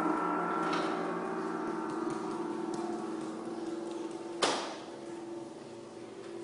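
A large gong ringing and slowly fading after a strike, its several steady tones held together. About four and a half seconds in there is a single sharp knock, after which the ringing briefly grows louder again.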